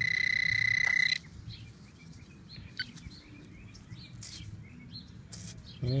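Garrett pinpointer sounding a steady high-pitched alarm tone for about a second as it sits on a buried coin, then cutting off. Faint bird chirps follow.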